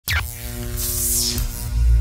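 Intro sound effect for a logo title card: a sudden deep bass hit with a brief falling sweep, then a steady low droning rumble with held tones, and a hissing whoosh that swells and falls away about a second in.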